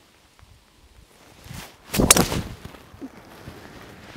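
Golf driver swung at about 104 mph clubhead speed: a brief rising swish of the downswing about a second and a half in, then the sharp crack of the clubhead striking the ball about two seconds in.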